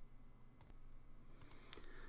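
A few faint clicks of a computer mouse over near-silent room tone, as the on-screen document is moved on to the next page.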